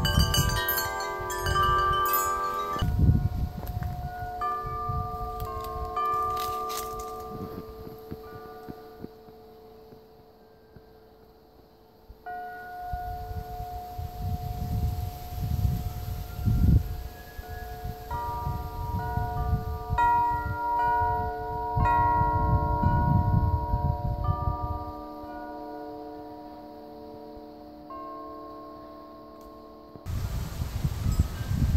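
Hanging metal tube wind chimes ringing in the breeze. Several pitches are struck irregularly and left to ring on, with gusts of wind buffeting the microphone. The chiming dies down to a faint ring about ten seconds in, then picks up again with lower, deeper tones joining.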